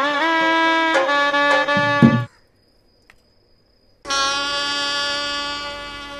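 Music of sustained horn-like notes: a short phrase with a few small pitch bends that stops about two seconds in, then after a gap of silence one long held note that slowly fades.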